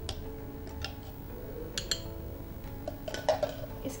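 Background music with several light clinks of a spoon against a glass.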